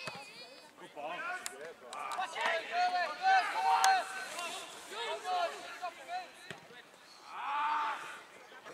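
Footballers shouting calls to each other on the pitch during play, the shouts loudest around the middle with a long call near the end, and a couple of sharp thuds of the ball being kicked.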